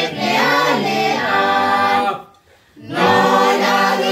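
A mixed group of carolers singing a carol together unaccompanied. The singing breaks off briefly for a pause of under a second about halfway through, then goes on.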